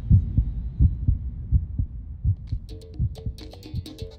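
A heartbeat, deep double thumps repeating a little faster than once a second and fading. About two and a half seconds in, light percussive music begins over it.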